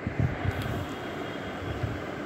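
Low, steady indoor background rumble, with a few soft low thumps in the first half-second.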